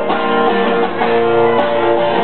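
Acoustic guitar strumming chords in an instrumental gap between sung lines, with a new strum about every half second and the chords ringing on.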